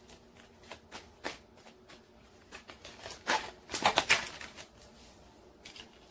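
A tarot deck being shuffled by hand: a run of quick card slaps and riffles, loudest in a burst about three to four seconds in.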